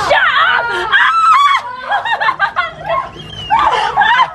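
Several people squealing and laughing in high, overlapping voices, a ticklish reaction to small spa fish sucking at their feet.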